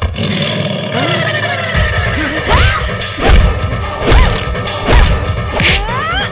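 Fight-scene soundtrack: background music with dubbed punch and slap sound effects, a heavy hit about once a second from the middle on.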